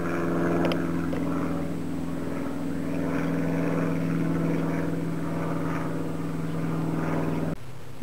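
Propeller aircraft passing overhead: a steady engine drone with several even tones, which cuts off suddenly near the end.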